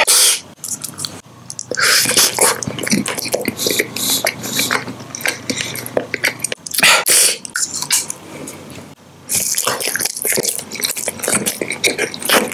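Close-miked mouth sounds of chewing gum: wet, irregular clicks and smacks in quick bursts, with a few louder bursts.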